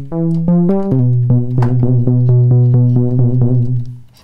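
Softube Model 82 monosynth, an emulation of the Roland SH-101, playing bass: a few short notes, then one low note held, its tone pulsing about three times a second. The pulsing is the LFO sweeping the pulse width, synced to quarter notes.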